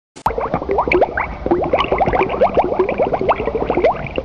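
Bubbling water: after a click, a dense, rapid run of short rising plops, several a second, over a low rumble.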